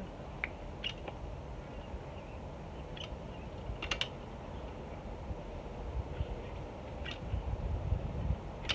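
Manual caulk gun clicking a handful of times as its trigger is squeezed to push painter's caulk into trim joints, over a low steady rumble.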